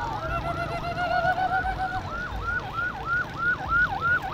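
An electronic siren sounding a fast yelp, its pitch swooping up and down about three times a second. A second siren overlaps it for about the first second. Low crowd and traffic noise runs underneath.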